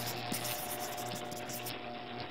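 Pen scratching as it writes: a steady rough scribbling noise made of many tiny ticks, with a faint steady tone underneath.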